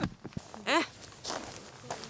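A few soft crunching footsteps on thin snow with clothing rustle, as a person steps up to and over a sled, with short sharp clicks near the start.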